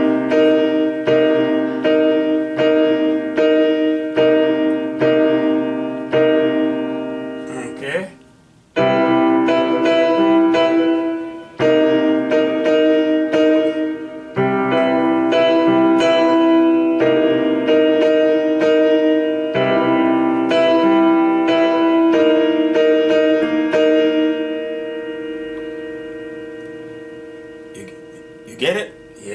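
Electronic keyboard with a piano voice playing an open-voiced C minor seventh chord with both hands, struck over and over about one and a half times a second. After a short break about eight seconds in the chords resume, and the last one is held and fades out over the final few seconds.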